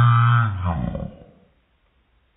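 A deep, drawn-out voice-like call lasting about a second and a half, dropping in pitch as it fades out.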